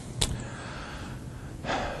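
Low room tone with a single sharp click about a quarter second in, then a man's audible intake of breath near the end, just before he resumes speaking.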